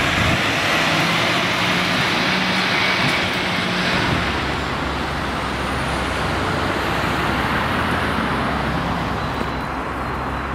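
Road traffic passing on a city street, with a heavy lorry's engine running close by for the first few seconds, then a steadier traffic noise.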